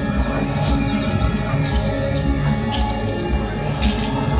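Electronic music played live: a dense, pulsing bass with high gliding tones that curve up and down in the first couple of seconds.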